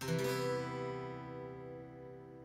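A C major 7 chord strummed once across five strings of an acoustic guitar, left to ring and slowly fading, a mellow, sleepy sound.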